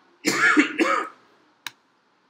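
A man clearing his throat in two short bursts, followed about half a second later by a single sharp click of a computer mouse.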